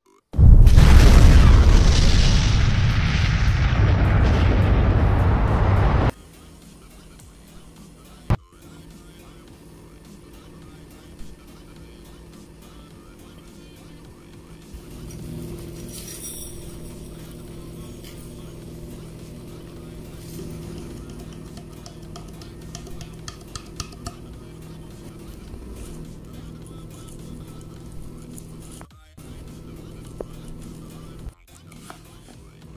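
A loud, deep, rumbling boom sets in just after the start and fades slightly over about six seconds before cutting off suddenly. Soft background music follows from about halfway.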